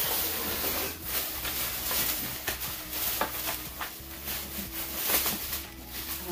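Thin plastic shopping bag rustling and crinkling as it is handled and pulled open, with irregular crackles.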